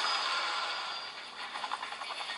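The soundtracks of several videos playing at once through a smartphone's small built-in loudspeaker, an HDC Galaxy Note 3 clone: a thin, steady, noisy jumble with no bass and no clear words.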